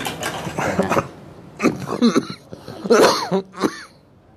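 A person coughing repeatedly, in about three bouts.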